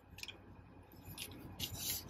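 Plastic parts of an Ultra Magnus transformable action figure rubbing and clicking as they are handled and pushed together: a couple of faint clicks, then a louder scrape near the end.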